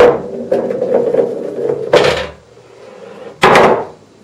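A 2 1/16-inch snooker ball running through the ball-return runs of a UK pool table: a knock as it enters, a rolling rumble, another knock about two seconds in, then a loud clack near the end as it drops into the ball compartment. It passes through freely.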